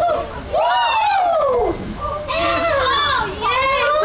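Children's voices calling out excitedly and overlapping, with a high-pitched squeal about a second in.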